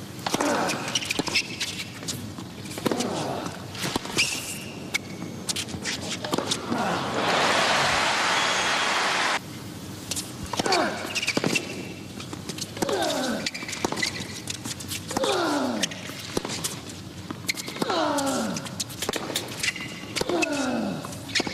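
Tennis rally on a hard court: sharp racket-on-ball strikes and shoe squeaks, with a player's short grunt falling in pitch on many strokes. A burst of crowd applause comes in the middle and stops suddenly.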